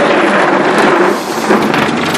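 Enamel table top being pushed and sliding across its wooden base: a continuous scraping rumble.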